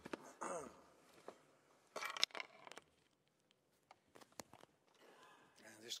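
Short snatches of speech in a quiet chamber: a few words near the start, around two seconds in and again near the end, with a few faint clicks in the pauses.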